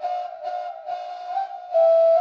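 Background flute music: a single wind instrument playing a slow melody of long held notes.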